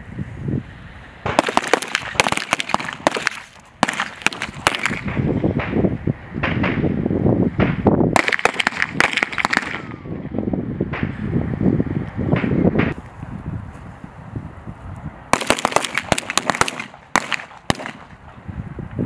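Small-arms gunfire on a qualification range: rapid, overlapping shots from several firers along the line. They come in clusters of a second or two, with short gaps between.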